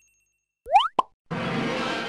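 A cartoon-style 'bloop' sound effect: a quick upward slide in pitch, then a short sharp pop about a second in. Light background music starts just after.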